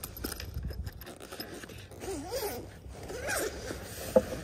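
The zipper of a soft rifle case being pulled open along its length, giving an uneven rasping run.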